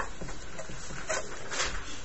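Felt-tip marker squeaking and scratching on paper in a few short strokes while a number is written.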